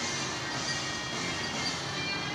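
Steady gym room noise with faint music playing. No clank of the dumbbells or other sharp sound stands out.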